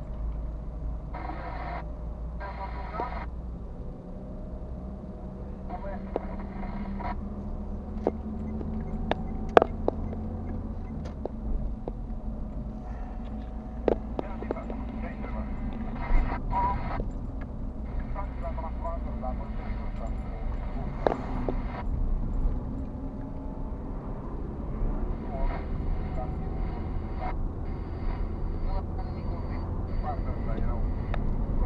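Car driving through town heard from inside the cabin: a steady low engine and tyre rumble with scattered sharp knocks and rattles.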